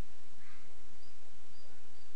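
Steady hiss of recording background noise with no speech. A faint, brief squeak comes about half a second in.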